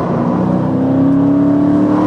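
Dodge Challenger engine accelerating in gear, its note climbing slowly and steadily.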